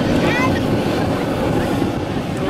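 Steady low rumble of surf and wind at a rocky seaside blowhole, with the voices of onlookers over it.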